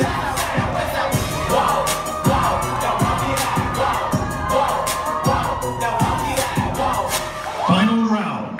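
Loud hip hop routine music over a venue sound system with a heavy beat, and the audience cheering and shouting over it.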